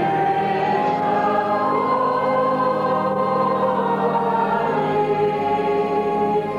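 A choir singing slow, long-held notes in several voices.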